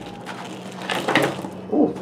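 A small plastic plant pot slid off a root ball of soil and stones, with a short patch of scraping and rattling about a second in.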